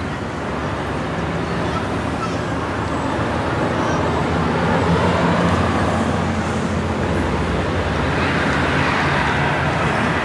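Road traffic passing: a steady rush of car engines and tyres that swells a little around the middle.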